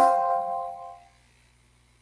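Electronic multi-tone chime, several pitches struck together and dying away within about a second: the draft software's alert as a new player comes up for bidding.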